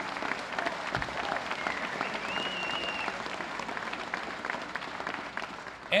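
Audience applauding, a steady spell of clapping that eases off slightly near the end.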